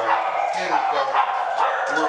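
Many dogs in a dog daycare barking over one another in a steady, continuous din.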